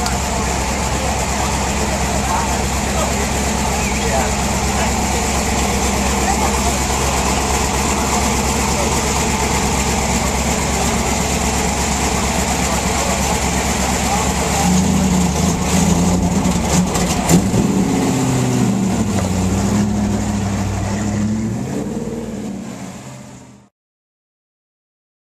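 Off-road race truck's engine idling steadily under crowd chatter, then its note rising and falling as it is revved from about fifteen seconds in, before the sound fades out near the end.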